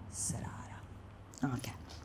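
A woman's quiet, half-whispered speech: a short hiss, then a few soft murmured syllables.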